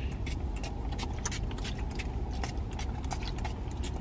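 A run of quick spritzes from a perfume spray bottle, over the low steady rumble of a car idling.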